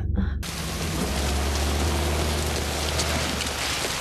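Heavy rain falling steadily, starting about half a second in, with a low steady hum beneath it.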